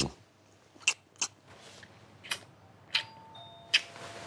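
Soft lip smacks of a couple kissing, five or six short wet clicks. About three seconds in, a two-note electronic door chime rings and holds to the end.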